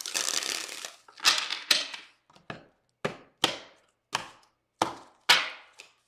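Tarot deck being riffle-shuffled, a dense fluttering run of cards for about the first second. Then come single sharp card snaps or taps, roughly every half second.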